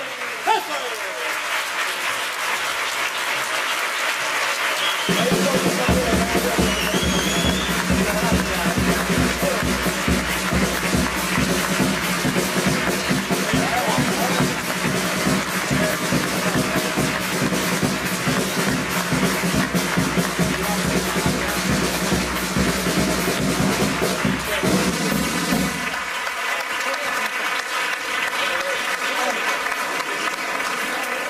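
Theatre audience applauding after a carnival chirigota's song ends, with music carrying a steady beat joining in about five seconds in and stopping about four seconds before the end.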